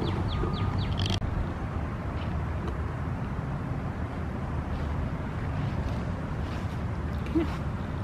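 Steady low outdoor background noise, with one sharp click about a second in.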